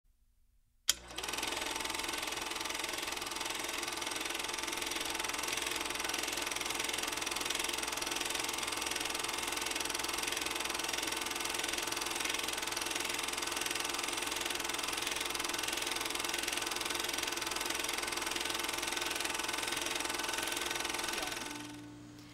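Old film projector sound effect: a click about a second in, then a steady mechanical running whir with crackle and hiss, fading out near the end.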